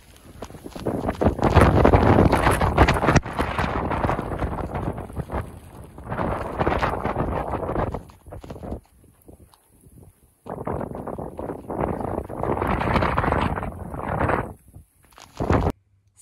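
Storm wind buffeting the microphone in two long gusts, the first lasting about eight seconds and the second about five, with a brief lull between them.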